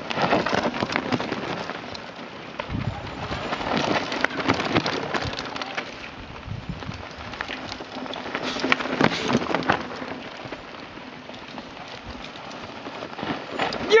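Mountain bikes passing one after another down a dry dirt trail: tyres crunching over loose dirt and stones and brushing through dry grass, with many small clicks and rattles. The noise swells four times as each rider goes by.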